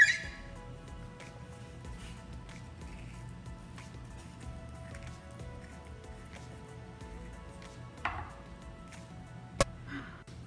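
Faint background music with long held notes, under the sounds of a kitchen knife cutting an avocado over a wooden cutting board: a sharp knock at the start, a brief rustle about eight seconds in and a click near the end.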